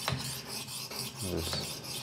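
Horl 2 rolling knife sharpener's diamond-coated grinding disc being rolled back and forth under pressure along a steel kitchen knife edge held on a magnetic angle block: a continuous gritty scraping as the edge is ground.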